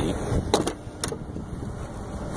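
Two sharp clicks, about half a second apart, from the 1985 Buick LeSabre's rear door handle and latch as the door is pulled open, over a steady low rumble from the car's idling engine.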